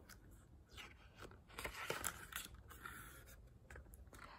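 Faint rustling and a few light taps of a picture book's paper page being turned and the book handled.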